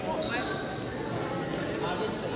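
Voices chattering in a large, echoing gym during badminton play. A high-pitched squeak lasting under a second, typical of court shoes on the gym floor, starts about a quarter second in.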